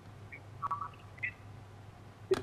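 Skype call audio breaking up: a few faint, chirpy clipped fragments of a man's voice over a steady low hum. The connection is dropping the correspondent's sound.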